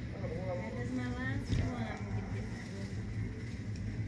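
Indistinct background voices over a steady low hum, with one short knock about a second and a half in.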